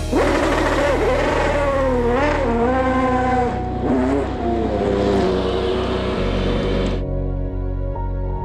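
Ligier LMP2 race car's V8 engine revving hard, its pitch swooping up and down as the car spins donuts, over background music with a steady beat. The engine sound cuts off suddenly about seven seconds in, leaving only the music.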